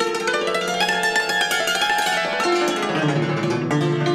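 Concert cimbalom played solo, its metal strings struck with two hand-held wrapped-tip hammers in fast runs of notes that ring into one another.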